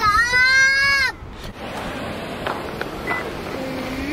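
A gull gives one drawn-out call that rises slightly in pitch and falls away, ending about a second in.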